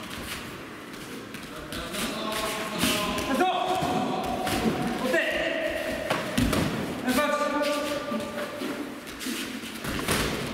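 Full-contact sparring in protective gear: gloved punches thudding against head guards and body protectors, and bare feet on tatami, among several voices calling out in the hall.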